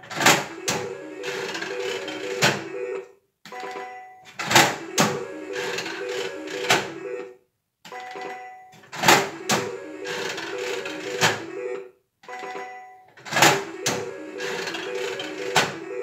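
A three-reel 25-cent slot machine spun four times in a row. Each spin opens with a sharp clack, the reels clatter under the machine's repeating beeping tune for about three seconds, and they stop with a few clunks, with a brief pause before the next spin.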